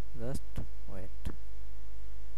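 Steady low electrical mains hum on the recording, the loudest sound throughout. Two brief vocal sounds and a few sharp clicks occur in the first second and a half.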